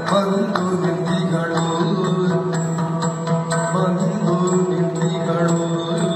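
Yakshagana background music: maddale drum strokes over a steady drone, with a voice holding long wavering sung notes.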